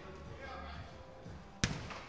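Faint, echoing voices of players calling across an indoor football hall, then, about a second and a half in, one sharp smack of the football being struck, the loudest sound.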